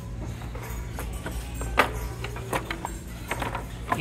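Store background music playing under a steady low hum, with a few light clicks and knocks of items being handled on a shelf, the sharpest a little under two seconds in.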